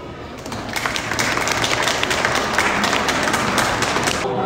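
Audience applauding a choir: dense clapping that starts about half a second in and cuts off suddenly at the end.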